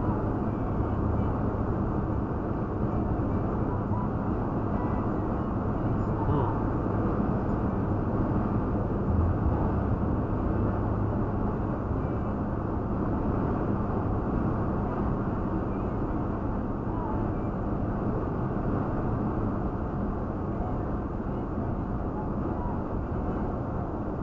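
Steady cabin noise of a Toyota Tacoma pickup at highway speed, heard through a dashcam: a constant low engine hum under tyre and road noise.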